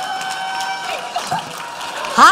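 Audience applauding, many hands clapping, with one long held cheer from the crowd in about the first second.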